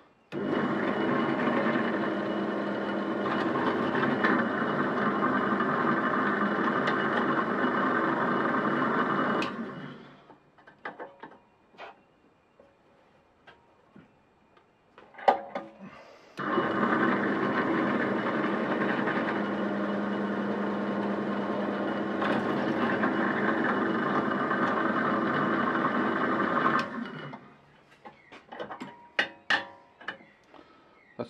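Bench drill press motor running while its bit drills pilot holes in tinned copper bus bar, in two runs of about ten seconds each that start suddenly and wind down at the end. Between the runs and after the second are light clicks and clanks of the metal being handled, with one sharp knock in the middle.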